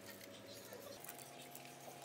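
Faint light rustling and clicking of bamboo skewers being gathered by hand on a metal tray.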